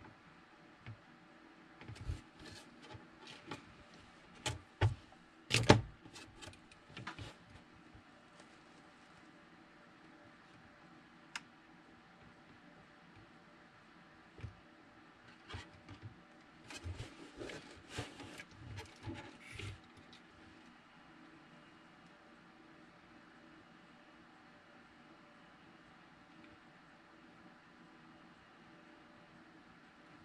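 Scattered light clicks and knocks from a soldering iron and a small circuit board being handled on a cutting mat during desoldering, in two bursts with a louder knock about six seconds in. A faint steady hum runs underneath.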